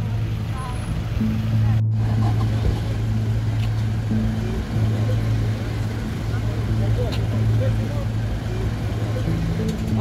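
Idling SUV engines giving a steady low hum, with indistinct voices faintly in the background. The sound briefly drops out at a cut about two seconds in.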